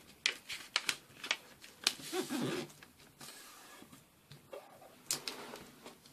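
A sheet of paper being handled and folded in half lengthways, with short, sharp crackles and rustles as the paper is flattened and the crease is pressed down by hand.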